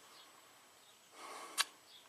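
Near silence, then a faint breathy hiss and a single short, sharp click about one and a half seconds in.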